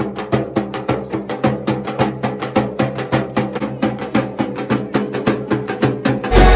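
Rope-tensioned barrel drums beaten with thin sticks in a fast, even rhythm of sharp strokes, several a second.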